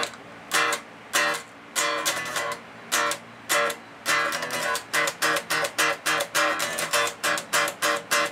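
Electric guitar with a string wrapper (fret wrap) on the strings near the nut, played in short staccato chord strums that stop cleanly with no clangy string ringing. The strums come about one every half second at first, then quicker from about halfway through.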